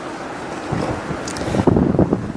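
Wind buffeting the microphone over a steady outdoor noise, with heavier gusts rumbling from about a third of the way in.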